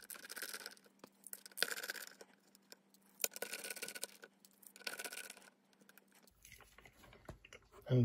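T8 Torx screwdriver turning small screws out of the metal plate inside an Apple AirPort Extreme router: four short scraping, ticking bursts, each under a second. A faint steady hum runs beneath them and stops about six seconds in.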